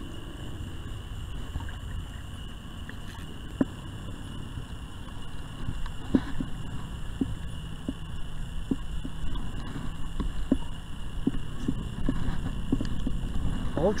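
Water and wind rumbling around a kayak while a hooked channel catfish is fought on a spinning reel with six-pound line. Light, irregular ticks from the reel are heard, one a few seconds in and then several, about every half second, from about six seconds in.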